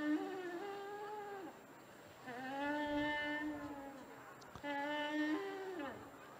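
A shofar blown in three held blasts with short gaps between them. The first is already sounding and ends about a second and a half in; the second is steady; the first and last step up in pitch toward their ends.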